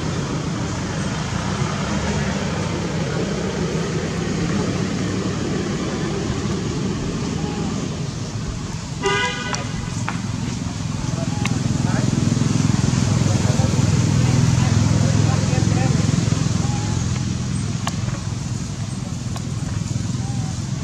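Steady background of road traffic with distant voices, a little louder in the second half, and one short vehicle horn toot about nine seconds in.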